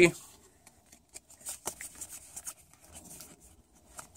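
Faint rustling and light, scattered ticks of trading cards being handled: a freshly opened Pokémon booster pack's cards pulled out and fanned between the fingers.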